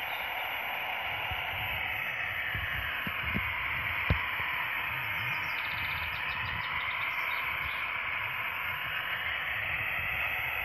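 Steady static hiss from an R-323 Soviet military valve receiver's speaker, with no station coming through between transmissions. There is a single sharp click about four seconds in.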